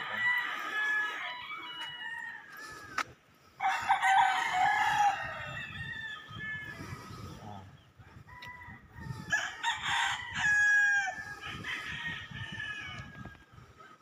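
Roosters crowing: about four long crows one after another.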